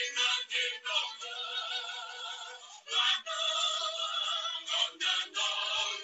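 A recorded song: a singing voice holding long, wavering notes over music.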